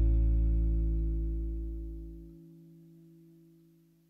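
The final chord of the song rings out on an acoustic guitar and dies away. A deep low note under it cuts off about two seconds in, and the remaining tones fade to near silence by the end.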